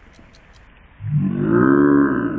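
Faint regular ticking, about five times a second, then about halfway through a loud, deep, drawn-out voice-like cry whose pitch rises and then falls.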